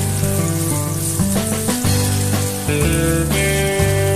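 Sliced onions sizzling in oil in a wok as a wooden spatula stirs them, under background music with steady sustained notes and a bass line.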